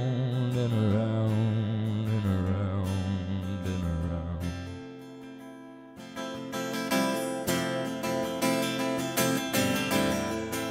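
Acoustic guitar and voice: a long sung note with vibrato rings over the guitar and fades away over the first few seconds. After a brief lull about halfway through, steady acoustic guitar strumming starts up again.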